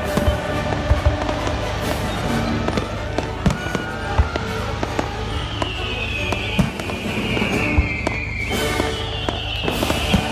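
Fireworks display: irregular sharp bangs and crackles of aerial shells bursting, over music. Two long whistles falling in pitch come in the second half.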